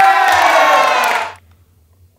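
A group of young women cheering and shouting together in one long held cry that breaks off about a second and a half in.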